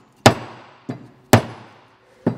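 A wooden block used as a mallet knocking a glued wooden wedge down into the kerf of a new axe handle, seating the wedge so it spreads the wood tight in the axe head's eye. Two sharp wooden knocks about a second apart, with a lighter tap between them.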